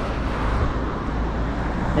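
Road traffic noise: cars passing on a street, with a steady low rumble of wind on the microphone.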